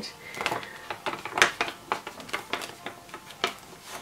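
Stiff clear plastic dashboard sheet in a traveler's notebook crackling and clicking as it is bent and pressed by hand, in a run of short, sharp clicks. The plastic is still quite stiff and will not lie flat.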